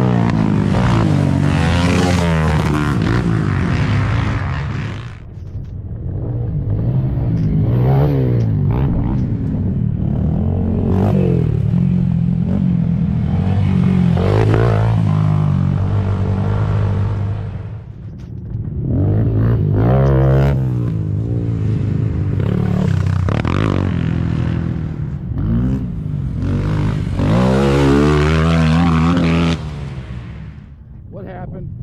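Small youth ATV engines revving up and down repeatedly as quads climb the trail and pass close by, the pitch rising and falling many times. The sound dips briefly twice as one machine goes by and the next arrives.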